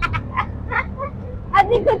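Short bursts of laughter from passengers in a moving auto-rickshaw, over the low steady drone of its engine.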